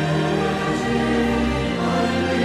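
Choir singing a sacred hymn in long held chords, the harmony shifting near the end.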